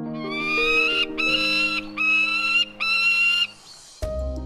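A peregrine falcon calling four times in quick succession: drawn-out, high-pitched calls, the first sliding upward in pitch. Soft piano background music plays underneath.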